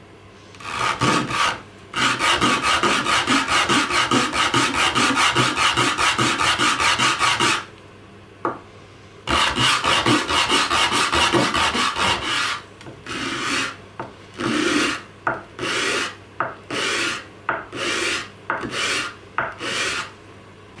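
A resin and burl birch bottle stopper blank rubbed by hand on a sheet of sandpaper laid flat on the bench, sanding its end flat. It goes in quick back-and-forth strokes, several a second, in two runs with a short pause between. Near the end the strokes come slower and separate.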